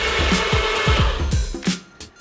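Bullet-style personal blender running on a cup of lemon juice, water and chilies, cutting off about a second and a half in. Background music with a steady thumping beat plays throughout.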